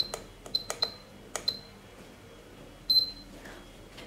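SUGON T26D soldering station's buttons pressed, each press a click with a short high beep: about four in the first second and a half, then a longer, louder beep about three seconds in.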